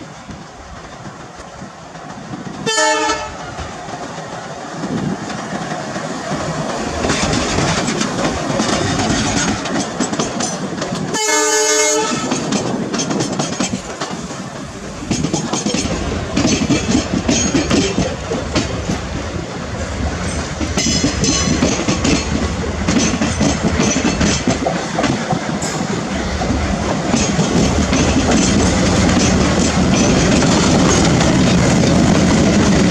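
Indian Railways diesel-hauled passenger trains passing at close range. A short locomotive horn blast comes about three seconds in and a longer one around eleven seconds, over a steady clickety-clack of coach wheels on rail joints. From about sixteen seconds a diesel locomotive's engine hum builds as it approaches, and it is loudest near the end as it runs past.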